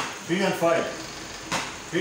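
A bat knocking a ball hung on a rope, two sharp knocks about a second and a half apart, the strokes of a hitting drill.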